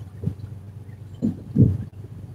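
A fishing boat's engine running steadily underway, with a few irregular low rumbling bursts over it, the loudest about a second and a half in.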